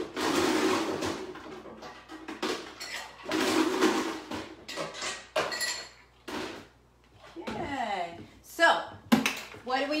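Ice cubes clattering into a glass in two rushes of about a second each, followed by a few short knocks.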